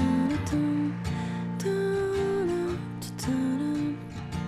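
Background music played on plucked and strummed guitar.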